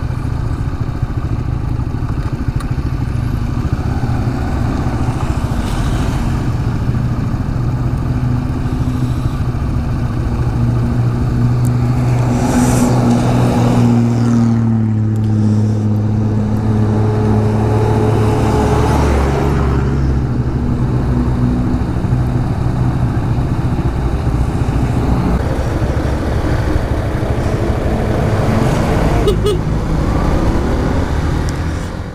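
Small single-cylinder motorcycle engine running steadily under way, heard over steady wind and road noise. Two louder rushes of noise come about halfway through and again a few seconds later as large trucks go past.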